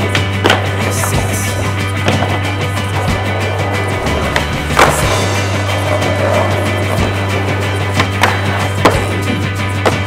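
Music with a steady, sustained bass over skateboard sounds: wheels rolling on pavement and several sharp board impacts from pops and landings, the loudest about halfway through.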